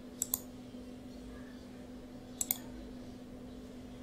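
Computer mouse clicking twice, each a quick pair of ticks, about a quarter second in and again about two and a half seconds in, over a steady low hum. The clicks toggle layer visibility in Photoshop.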